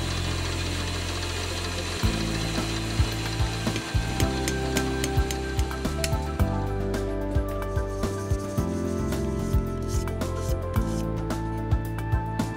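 Background music of held notes that change pitch every second or so, with sharp clicks scattered through it.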